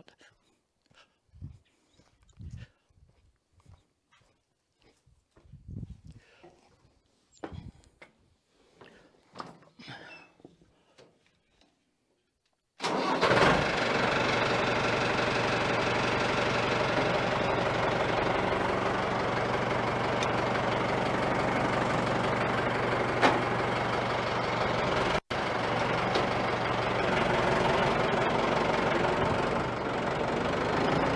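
A few faint scattered sounds, then about thirteen seconds in a compact farm tractor's diesel engine starts abruptly and runs on steadily, with one momentary dropout near the end.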